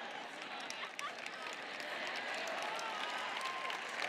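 Studio audience laughing and clapping in response to a joke: a steady, fairly quiet wash of crowd laughter and murmur with scattered hand claps.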